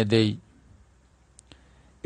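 A man's lecturing voice finishes a word at the start, then a pause in which two faint short clicks come close together about a second and a half in.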